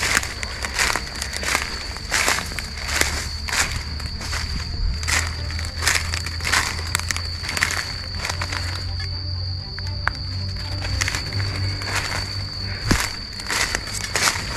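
Footsteps crunching and crackling through thick dry leaf litter and twigs at a walking pace, about one step every two-thirds of a second, thinning out in the middle. A steady high-pitched tone runs underneath.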